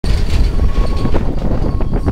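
Backhoe loader's diesel engine running close up: a dense low rumble with scattered clanks and knocks from the machine.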